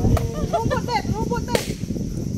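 A sharp crack just after the start and a louder, noisier pop about one and a half seconds in, over people calling and chattering.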